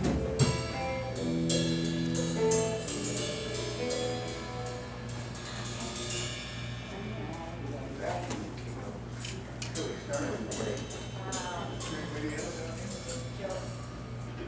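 Loose playing from a small band's drum kit and instruments rather than a song: a few held notes in the first seconds, then scattered drum and cymbal hits. People talk in the background and a steady low hum runs underneath.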